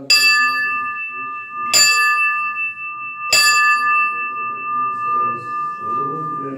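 A bell struck three times, about a second and a half apart. Each stroke rings on in a steady, clear tone that is still sounding when the next stroke comes.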